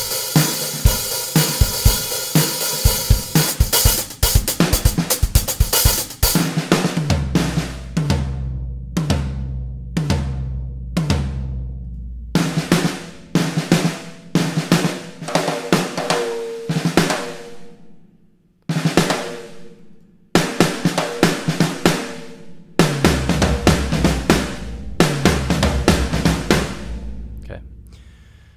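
Sampled acoustic drum kit played back from the Superior Drummer software instrument: grooves and fills on kick, snare, toms, hi-hat and cymbals, with a run of toms stepping down in pitch around seven to twelve seconds in. The playback stops briefly twice, about eighteen and twenty seconds in, before the beat resumes.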